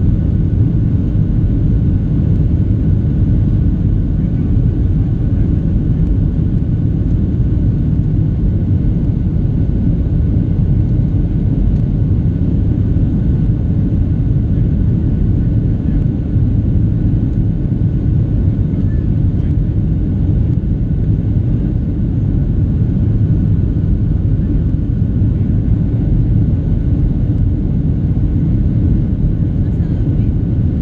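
Steady, loud cabin drone of a Boeing 737-700 in its climb after takeoff: engine and airflow rumble from a seat over the wing. A faint, thin, steady high tone runs above it.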